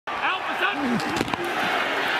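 Voices calling out over football stadium crowd noise, with a few sharp knocks a little over a second in as the ball is snapped and the linemen's pads collide.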